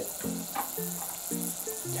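Battered garlic sprouts deep-frying in hot tempura oil at about 190 °C, a steady sizzle, under louder background music of short held notes.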